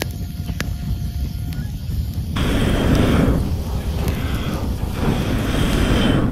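Hardwood campfire burning, with a steady low rumble; the sound jumps louder and fuller a little over two seconds in.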